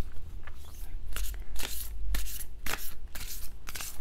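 Large oracle cards with a matte, not-shiny finish being shuffled by hand: a run of irregular soft slaps and rustles of card on card.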